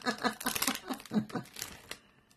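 A foil wrapper crinkling and tearing as hands handle it, a quick run of crackles that tails off near the end.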